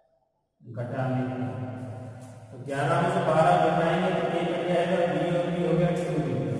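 A man's voice chanting in long held notes. It starts just under a second in and grows louder at about three seconds in.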